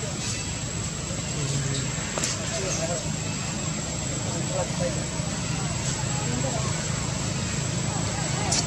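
Faint, distant human voices talking over a steady low background rumble.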